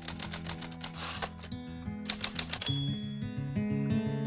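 Typewriter keystroke sound effect: two quick runs of clacks, the first at the start and the second around the middle, over background music with a stepping low bass line.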